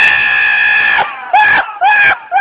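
A goat screaming: one long, loud, human-like scream that stops about a second in, followed by two short bleats that bend in pitch.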